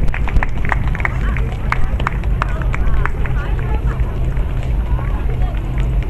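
Indistinct voices of people around, with many short clicks and taps, over a steady low hum.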